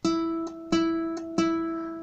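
Classical guitar playing the same single note three times, about 0.7 s apart, each pluck left ringing into the next. It is the note marked 25 in the numeric tab: second string, fifth fret.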